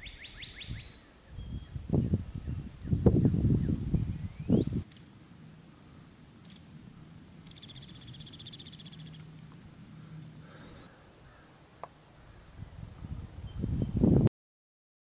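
Outdoor birds calling: a short high trill right at the start and another quick, evenly pulsed trill about eight seconds in. Low rumbling gusts, likely wind on the microphone, come in the first five seconds, then it turns quiet.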